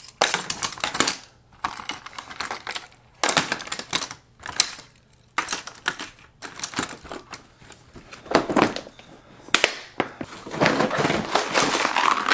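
Fishing lures and hooks clattering and clicking against a clear plastic compartment tackle box as they are put away and the lid is closed over them. Near the end there is a longer scraping as a plastic tackle box is moved across the table.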